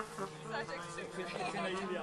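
Brass band between phrases: voices talk over a few scattered, wavering brass notes and a low held note, before the full band comes back in.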